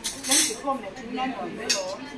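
Stainless steel plates and serving spoons clattering as food is dished out, with a loud clatter about a quarter second in and another near the end, over background talk.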